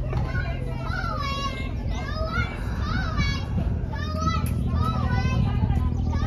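Children's voices at play, high-pitched calls and shouts rising and falling one after another, over a steady low hum.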